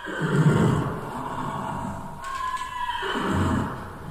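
A horse whinnying, a short falling cry about two seconds in, over a rumbling noisy bed. It is a film-style sound-effect sample opening a track.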